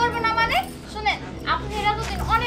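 Women talking in quick dialogue, their voices rising and falling.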